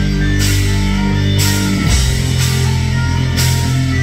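Death metal band playing live, with heavily distorted electric guitars holding low chords under drums, and cymbal crashes about once a second. The chords change about halfway through.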